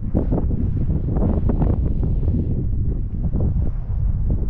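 Wind buffeting the microphone: a loud, steady rumble with irregular gusts.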